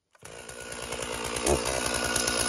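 Stihl MS461 two-stroke chainsaw running, coming in suddenly just after the start and settling into a steady idle, with a short throttle blip about one and a half seconds in.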